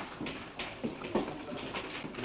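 Indistinct background chatter of several young voices in short snatches, mixed with a few light knocks and clicks.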